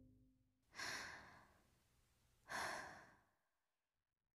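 Two faint, breathy sighs from a person, each about half a second long and a second and a half apart, with the music stopped.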